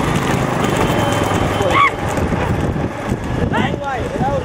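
Hooves of racing bullocks clattering on an asphalt road as bullock carts run past, with drivers shouting to urge the bulls on, two loud calls rising and falling near the middle and near the end.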